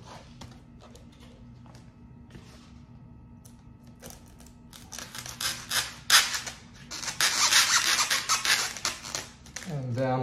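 Wooden posts of a framed sign being pushed down into holes cut in a styrofoam base, wood scraping against the foam. The scraping starts about five seconds in and is loudest over the last three seconds.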